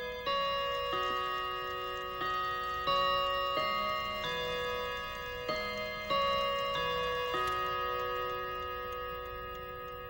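A slow melody of bell-like chimes. Single notes are struck about every two-thirds of a second and left ringing into one another. The last note is struck about seven seconds in and fades away.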